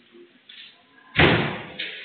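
A single loud bang a little over a second in, dying away over about half a second with room echo.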